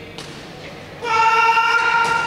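A shuttlecock struck hard with a racket, a sharp smack that rings in the hall. About a second in comes a loud, held, high-pitched shout from one voice as the rally ends.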